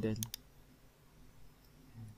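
Two quick computer mouse clicks about a quarter second in, clicking the Model tab to switch the drawing to model space, then quiet room tone.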